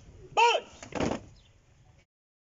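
A short voice-like call about half a second in, then a faint click and a louder sharp thud about a second in.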